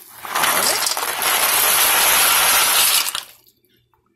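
Dry ziti poured from its cardboard box into a pot of boiling water: a loud clattering rush of hard pasta tubes lasting about three seconds, stopping suddenly.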